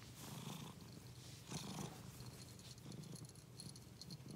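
Tabby cat purring, a low continuous purr that swells and fades several times.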